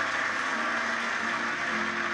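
Instrumental intro of a song: the band holds sustained chord tones under a steady, hiss-like wash, just before a strummed guitar comes in.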